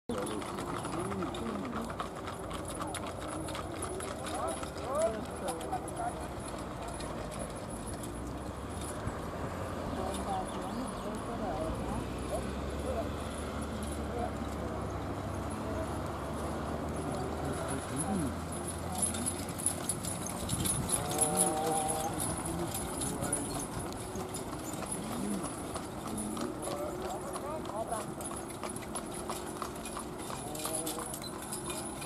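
Hoofbeats of a four-pony team pulling a marathon carriage, with people's voices and calls in the background.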